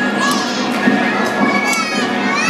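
Children shouting and calling out in short, high-pitched cries over the noise of a crowd.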